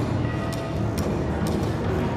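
Contemporary chamber ensemble playing live: a dense low mass of sound, cut by sharp percussive clicks about every half second.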